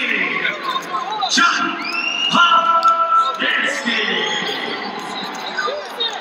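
Wrestling shoes squeaking on the mat, with a couple of quick rising squeals in the first half, under voices calling out in the background.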